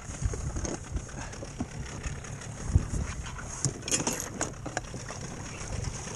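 Wind buffeting the microphone and water lapping at an inflatable boat, with scattered knocks and rattles, several of them close together about four seconds in.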